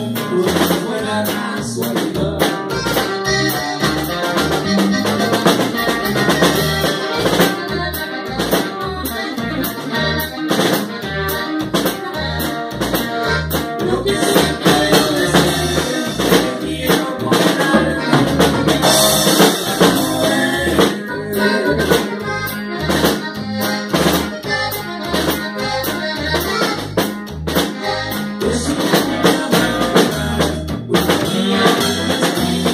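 Small norteño-style band playing live in a room: a button accordion carries the tune over electric bass and a drum kit keeping a steady beat.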